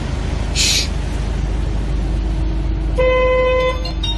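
A car horn sounds once, a short steady honk of under a second about three seconds in, over a steady low rumble, with a brief hiss less than a second in.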